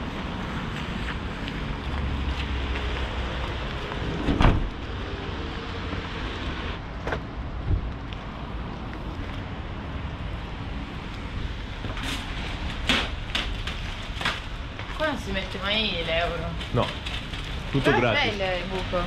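A camper van's sliding side door slammed shut with one loud thump about four seconds in, over steady outdoor car-park noise; a few sharp clicks follow later.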